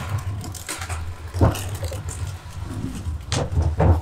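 A steady low engine-like hum, with a few knocks: one about a second and a half in and two close together near the end.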